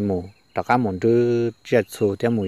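A man's voice narrating a story in Hmong, in short phrases with brief pauses, over a faint steady high-pitched tone.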